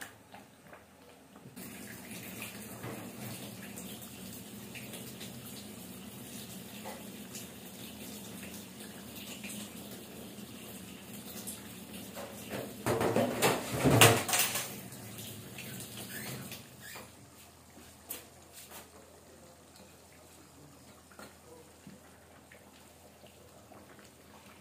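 Kitchen tap running: water noise switches on abruptly about two seconds in, grows louder for a couple of seconds past the middle, and cuts off about two-thirds of the way through. A few light clicks follow.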